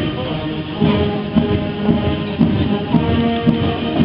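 Brass band playing outdoors, held brass notes over a steady beat.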